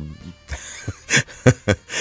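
A person coughing in a series of short, sharp bursts, with some throat clearing.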